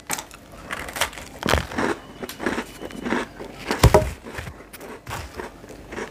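A man biting into and chewing a cake rusk, a dry toasted cake biscuit: irregular crisp crunching and crumbly crackling, with one louder crunch a little before the four-second mark.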